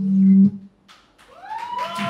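Acoustic guitar ringing out a loud final strummed chord that is damped abruptly with a knock about half a second in. After a brief hush, audience whoops rise and fall, and clapping starts near the end.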